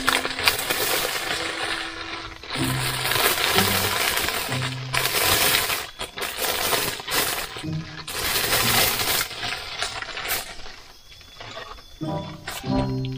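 Clear plastic bag crinkling and crackling as it is handled and opened, in loud irregular stretches that die down near the end. Soft background music with a few held low notes plays underneath.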